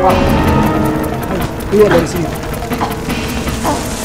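Background music breaks off, then a person's voice cries out several times over a noisy background, loudest about two seconds in.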